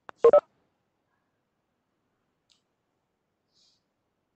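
A faint click, then two short electronic beeps in quick succession.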